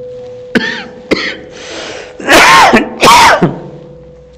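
People shouting: two long, loud shouts that rise and fall in pitch, about two and three seconds in, after a couple of sharp clicks and a shorter cry.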